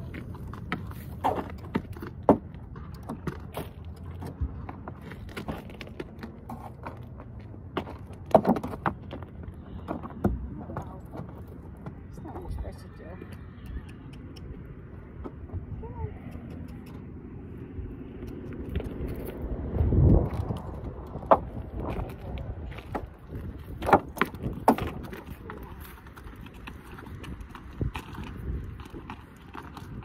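A horse's hooves and a person's boots crunching on rocky gravel and knocking on a wooden plank bridge as the horse is led across, with scattered sharp knocks throughout.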